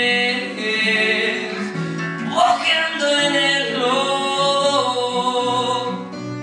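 A man singing a song in long held notes, with a rising slide in pitch midway, to his own acoustic guitar accompaniment.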